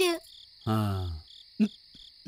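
Crickets chirping in a steady, evenly pulsing high trill. A man's short low murmur falls in pitch about two-thirds of a second in, louder than the crickets.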